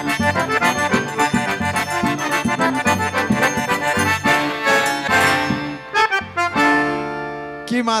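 Two piano accordions playing the instrumental close of a forró song over regular zabumba drum beats. About six seconds in the band breaks, then lands on a final held chord that fades away.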